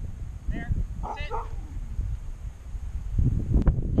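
A dog barking twice, briefly, in the first second and a half. Near the end comes a loud low rumble with a sharp click.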